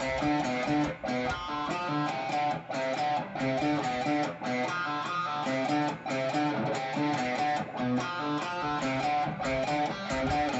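Schecter electric guitar in drop D tuning, played through an amp: a rhythmic power-chord riff on the low strings, with fretted notes pulled off to the open strings. A short phrase repeats about every one and a half to two seconds.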